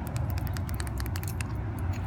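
Keys jingling in hand: a run of light, irregular clinks over a low, steady rumble.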